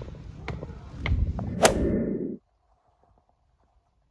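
Footsteps climbing stairs with metal nosings, about two steps a second, with one louder sharp knock about a second and a half in. The sound cuts off suddenly before halfway through.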